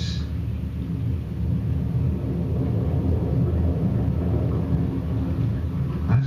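Deep, steady rumble from a nature documentary's soundtrack, played through classroom speakers and picked up in the room.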